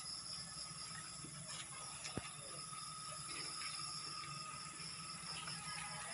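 Steady high buzzing of insects, with a sharp click about two seconds in.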